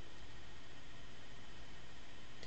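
Steady, even background hiss of the recording's room tone, with no distinct event.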